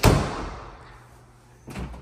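An interior door pushed shut with a sharp bang that dies away over about a second, followed by a lighter knock near the end.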